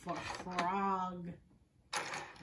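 A woman's voice holding one drawn-out word for about a second, with faint clicks of plastic magnetic letters being stirred in a tub.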